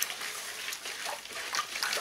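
A stick stirring liquid in a plastic bucket: soft, steady swishing and sloshing.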